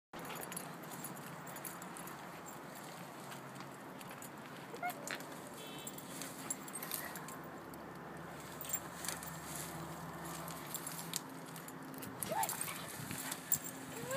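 A Vizsla puppy pushing and rolling through dense low shrubs: soft rustling of the branches with scattered light crackles. Near the end comes one brief high whine.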